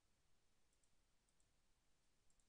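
Near silence: room tone with a few faint computer-mouse clicks, about a second in and again a little later.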